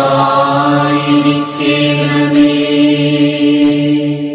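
Malayalam devotional chant, a sung prayer line holding one long steady note.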